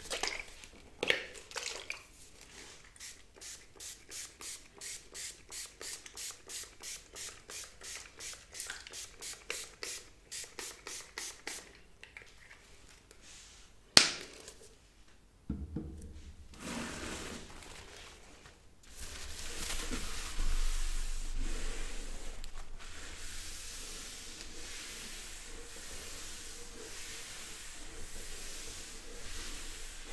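Handling and rubbing sounds with paper towel, first soft strokes about twice a second, then a single sharp spritz of a pump spray bottle a little before halfway. From about two-thirds in, a paper towel rubs steadily back and forth across a tabletop.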